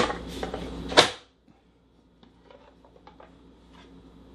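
Hand-pressed plastic vegetable chopper pushing an onion quarter through its grid blade, a crunching clatter that ends in a sharp snap about a second in. Then a few faint light clicks.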